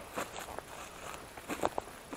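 Faint footsteps walking over short grass, with a couple of sharper steps near the end.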